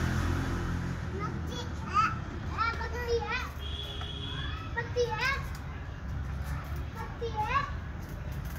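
Young children's voices: short, high calls and squeals rising and falling in pitch, heard over a low steady hum.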